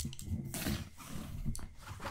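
Close-miked scratching and rustling on a cloth bed cover, used as an ASMR trigger: a sharp click at the start, then two rasping stretches, one about half a second in and one near the end.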